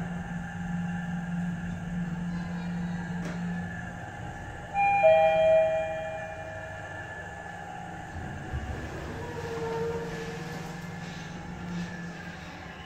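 Mitsubishi GPS-III traction elevator car travelling with a steady low drone that stops about four seconds in as the car arrives at its floor. A loud two-note arrival chime, high then low, sounds just after. Then comes a low rumble as the doors open.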